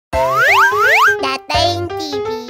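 Cheerful children's intro jingle that opens with two quick rising sweeps.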